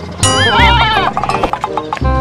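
A goat bleats once, a wavering call lasting about a second that starts a quarter second in, over background music.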